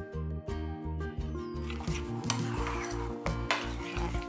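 Metal spoon stirring thick sauce in a ceramic bowl, scraping round the bowl, starting about a second and a half in. Background music with a steady beat plays throughout.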